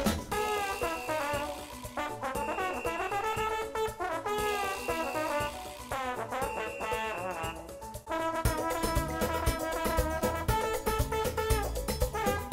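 Upbeat instrumental background music with a brass-led melody in held and sliding phrases. About eight seconds in, a fuller beat with drums takes over.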